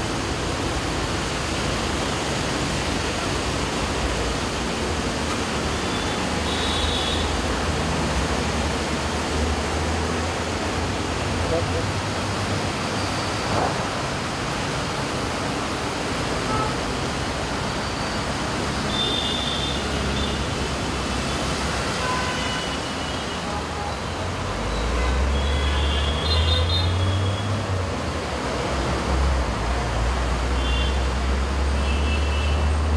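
Steady rain falling, a continuous hiss, with road traffic passing below. A low vehicle rumble swells briefly around a third of the way in, then grows louder near the end as a bus goes by.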